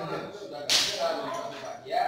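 A single sharp smack about two-thirds of a second in, dying away quickly, with people talking around it.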